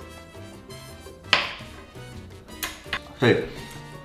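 Soft background music with one sharp clack about a second in, fitting a metal fork set down on a wooden chopping board, and a lighter click near the end.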